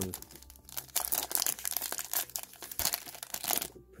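Foil wrapper of a trading card pack crinkling as it is handled, a dense run of irregular crackles that dies away near the end.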